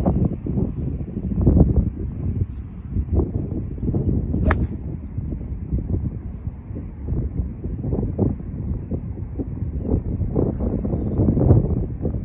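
Wind gusting on the microphone, low and uneven, swelling and dipping. A golf club strikes the ball right at the start, and a sharp click comes about four and a half seconds in.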